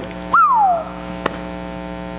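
Steady electrical mains hum with a stack of buzzing overtones. About a third of a second in, a single high tone jumps up and slides down over about half a second, like a short whistle.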